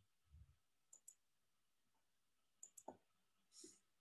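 Near silence with a few faint computer mouse clicks: a quick pair about a second in and a small cluster of clicks a little before three seconds.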